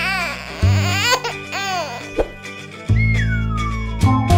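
Cartoon background music with steady bass notes, overlaid by squeaky, babyish cartoon vocal chirps in quick rising-and-falling notes. Near the end, one long whistle-like glide falls in pitch.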